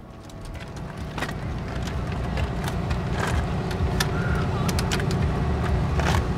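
Parking-lot ambience: a steady low rumble of road traffic fading up, with scattered light clicks and knocks from handling a wheelchair beside a minivan.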